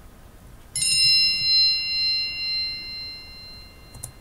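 A single bright chime, a 'bing', struck about a second in and ringing down over about three seconds. It is the quiz's cue to pause and write down an answer.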